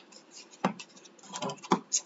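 Thin birch plywood pieces handled and fitted together by hand, with faint rubbing and two light knocks of wood on wood, one under a second in and one near the end.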